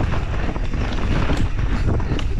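Wind buffeting the action camera's microphone at race speed, over the rumble of mountain bike tyres on dirt and the clatter of the enduro bike being shaken over roots and rocks, with frequent short knocks.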